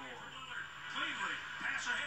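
Speech from a televised basketball highlight, heard through a TV's speaker.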